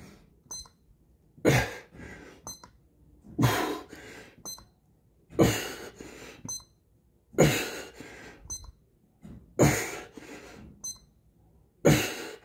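Push-ups in steady rhythm, about one every two seconds, six in all. Each has a short high electronic beep from the push-up counter as the chest presses its button, then a loud, forceful, strained exhale on the push back up.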